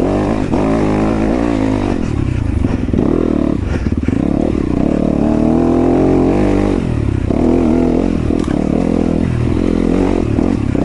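Yamaha YZ250FX dirt bike's four-stroke single-cylinder engine running on a climb, its pitch rising and falling as the throttle is worked. A few short clattering knocks from the bike going over rocks come through a couple of seconds in.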